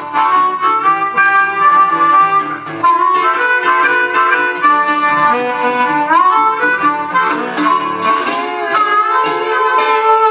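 Blues harmonica taking an instrumental break with held, wailing notes and bent notes, the clearest bends about six seconds in and again near nine seconds. Under it a National steel resonator guitar keeps a downhome blues accompaniment.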